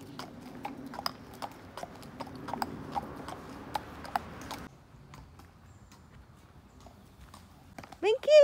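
A horse's hooves clip-clopping at a walk on an asphalt road, sharp irregular clicks several times a second. The hoofbeats turn fainter about five seconds in.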